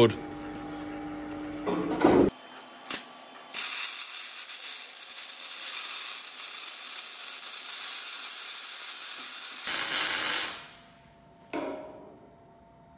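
MIG welding arc on steel: a steady crackling hiss lasting about seven seconds as a cleat plate is welded onto a steel RSJ beam, fading out, followed near the end by a second short burst of welding.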